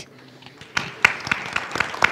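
Applause from a small group: separate hand claps, irregular and overlapping, starting just under a second in.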